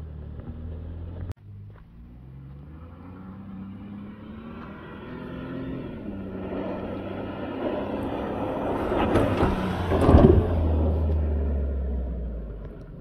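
Ford Bronco engine accelerating across sand dunes, its pitch rising in steps and growing steadily louder as it approaches. A brief loud rush of noise about ten seconds in, then the engine running on steady and loud before fading slightly.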